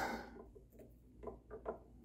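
Faint ticks and rustles of fingers working the tying thread and red wire rib at a fly-tying vise while the wire is tied off.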